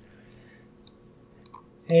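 A few faint, sharp clicks over quiet room tone, then a man's voice begins at the very end.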